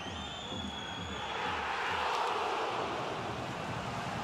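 Football stadium crowd, with a high steady whistle in the first second, swelling into a loud cheer from about a second and a half in as the home side scores.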